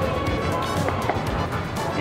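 Background music, held tones over a steady low bass.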